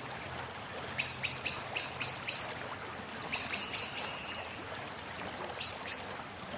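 A bird calling in three quick runs of sharp chirps, about four a second: six notes, then four ending in a short held tone, then two near the end, over a steady background hiss.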